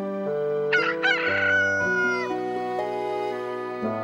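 A rooster crowing once, about a second in, over soft background music.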